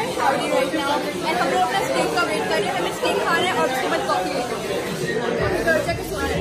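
Indistinct chatter: several voices talking over one another at a steady level.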